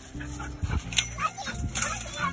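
A dog in its kennel giving a few short whines over a steady background music track.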